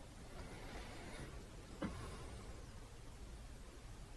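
Faint scrubbing of a paintbrush worked over stretched canvas, then a single sharp tap a little under two seconds in.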